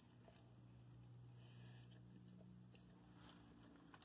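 Near silence: a person biting into and chewing a burger with the mouth closed, with a faint low steady hum in the background.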